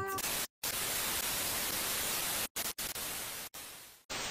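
Static hiss: an even rush of white noise, cut by a few brief gaps of silence and fading out near the end, in the manner of a TV-static transition effect.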